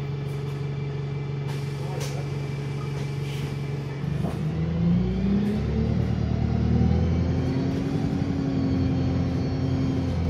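Wright StreetLite single-deck bus's diesel engine idling steadily as heard from inside the cabin. About four seconds in it revs up as the bus pulls away, its pitch rising and then holding as it accelerates.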